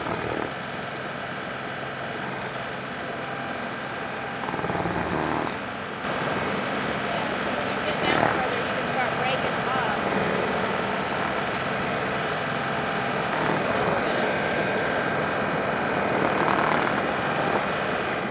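John Deere 2038R compact tractor's diesel engine running steadily under PTO load, driving a Baumalight 1P24 stump grinder whose cutter wheel is grinding through dirt and leftover ash-stump roots. The sound gets a little louder about six seconds in.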